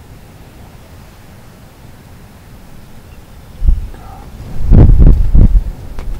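Faint steady outdoor background, then from about three and a half seconds in a run of loud, low rumbling bumps on the microphone, the strongest cluster near the end.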